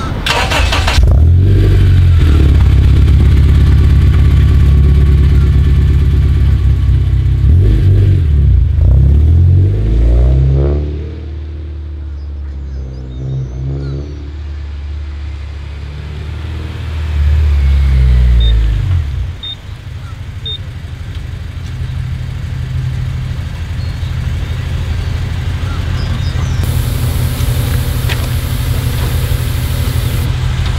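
Honda Civic Si's four-cylinder engine running loud and close, revving up a few times about eight seconds in, then the car pulling away. It comes back past loudly just before twenty seconds in and runs on more quietly and steadily to the end.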